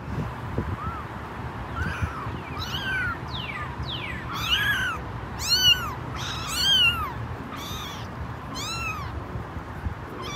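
A cat meowing over and over, about once a second, each meow rising and falling in pitch, loudest in the middle of the run.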